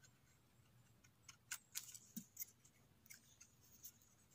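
Small knife blade scraping dirt and pine needles off a freshly picked mushroom's stem: a run of faint scratchy clicks from about a second in until near the end.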